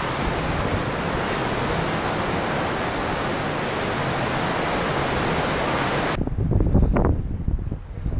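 Steady rushing of wind and the ship's churning wake water at sea. About six seconds in it cuts abruptly to low, gusty wind buffeting the microphone.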